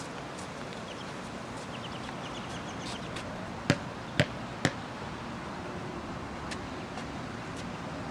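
A basketball bouncing three times on a hard outdoor court, about half a second apart, over steady outdoor background noise.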